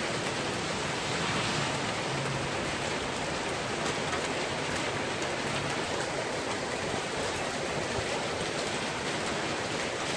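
Heavy rain pouring down in a steady, even hiss.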